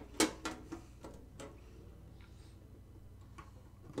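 A metal tin lunchbox being handled, making several short clicks and taps in the first second and a half, then going quiet.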